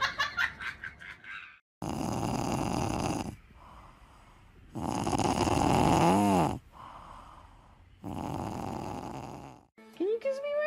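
Sleeping domestic cat snoring, three long snores about three seconds apart. The middle snore ends with a whistling rise and fall in pitch.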